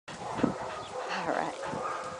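Young dog giving a few short barks and yips, the loudest about half a second in.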